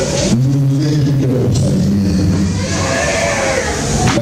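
A man's voice through a microphone and loudspeaker, chanting or singing in long held notes rather than speaking.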